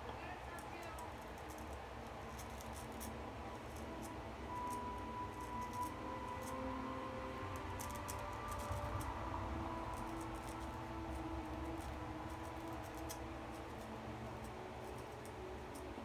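Diamond Edge straight razor scraping through lathered whiskers on the upper lip: faint, irregular scratchy strokes.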